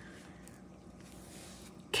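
Quiet room tone with a faint, steady low hum and no distinct event; a woman's voice starts again at the very end.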